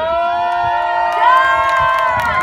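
Several voices screaming and cheering together in long, held, overlapping cries that start suddenly and stay loud throughout.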